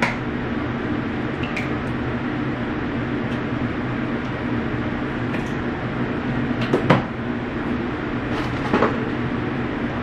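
Steady low mechanical hum, like a kitchen fan, with a few scattered knocks of kitchen handling; the loudest, a sharp knock, comes about seven seconds in.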